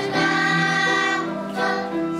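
Children's choir singing a hymn in unison, holding long notes that move from pitch to pitch.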